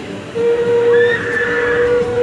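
A steam whistle blowing one long steady note, starting about a third of a second in.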